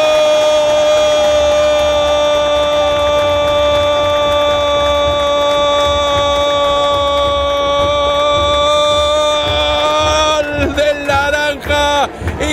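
A football commentator's long drawn-out goal cry: a single 'gooool' held at a steady pitch for about ten seconds. Near the end it breaks off into fast, excited speech.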